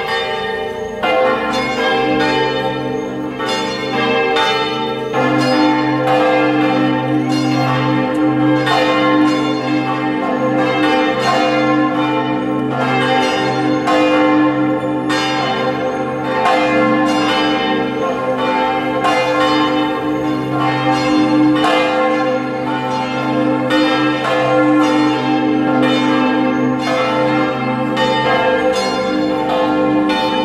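Church bells ringing continuously, with repeated overlapping strikes about once a second and a long ring after each.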